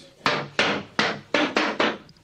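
Wooden rush-seated chair rocked by hand so its legs knock and scrape on a tiled floor: about six quick knocks, each with a short scrape.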